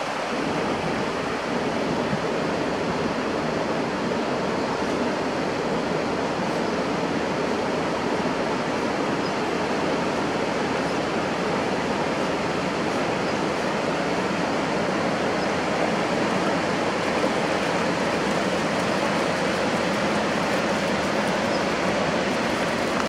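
Steady rush of river water pouring over small rapids, continuous and unbroken.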